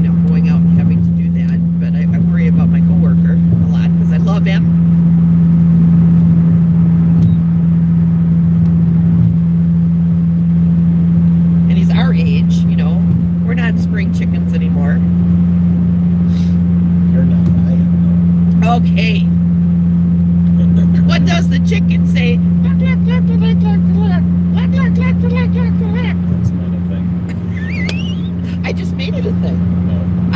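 Steady low hum of a moving car heard from inside the cabin, with talking over it at times.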